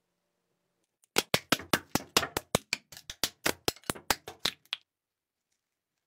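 A quick run of about twenty sharp, hard taps or clicks, roughly five or six a second with uneven spacing, lasting about three and a half seconds and starting about a second in.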